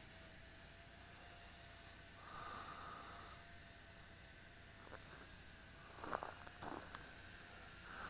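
Near silence, with a faint breath about two seconds in and a few small mouth clicks near the end.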